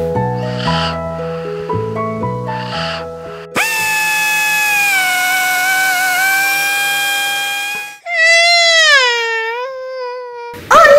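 A light musical tune for the first three seconds or so. Then a cordless drill starts suddenly and whines steadily for about four seconds. It cuts off, and a baby's wailing cry follows, falling in pitch.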